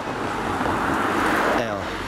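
A car passing close by on the road: a swell of tyre and engine noise that builds to a peak about a second and a half in, then eases.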